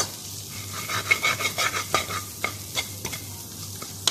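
Sliced red onions sautéing in a pan, sizzling steadily as a metal spoon stirs and scrapes them, with repeated quick clinks and scrapes of the spoon on the pan.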